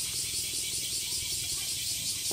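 A steady, high insect chorus with a fast, even pulsing, carrying on throughout.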